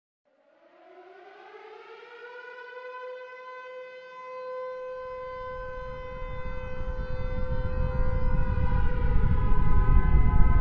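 Air-raid style siren winding up, its pitch rising over the first few seconds and then holding as a steady wail. A low rumble builds underneath from about halfway, and everything grows louder, with a second siren tone joining near the end.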